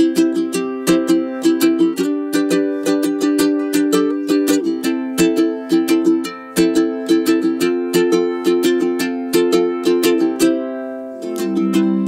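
Koa tenor ukuleles strummed in a steady, brisk chord pattern: a Kamaka HF3, then, after a short dip about 11 seconds in, a KoAloha KTM-00 playing the same strum.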